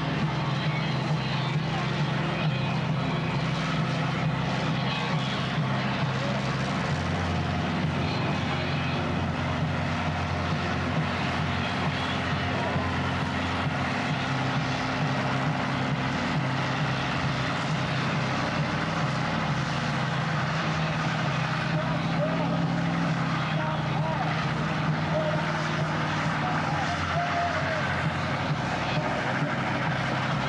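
Car engine held at high, steady revs during a burnout, the rear tyres spinning against the pavement and smoking.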